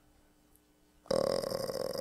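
Near silence for about a second, then a man's low, creaky, drawn-out vocal sound, like a long hesitant 'uhh' or a burp, close to the microphone.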